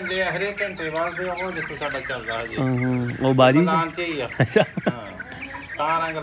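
A flock of backyard chickens clucking.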